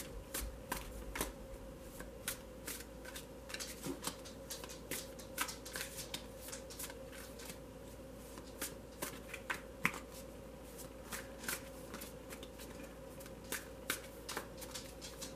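A tarot deck being shuffled overhand by hand: cards dropping and tapping onto the pile in quick, irregular clicks, over a faint steady hum.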